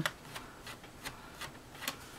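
Screwdriver backing out a small case screw from a thin-client PC: faint clicks and ticks, roughly evenly spaced, with a slightly louder click near the end.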